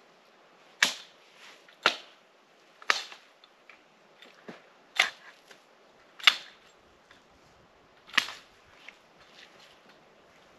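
Axe chopping a fallen tree, about six sharp strikes at uneven intervals of one to two seconds, with a few lighter taps between them.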